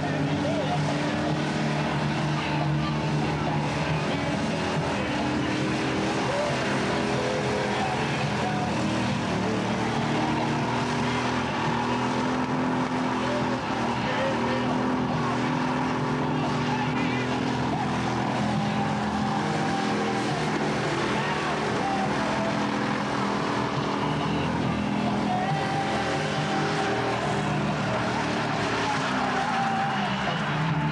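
A car engine held at high, fairly steady revs during a long burnout, with the rear tyres spinning and squealing on the tarmac.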